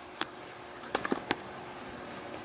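A few sharp, spaced-out clicks of a steel lock pick shifting in the keyway of a small wafer-lock padlock held in a vise.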